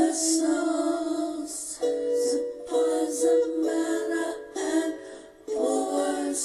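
Music: a woman's song over a strummed string accompaniment, sustained notes changing every second or so, with a brief lull about five seconds in.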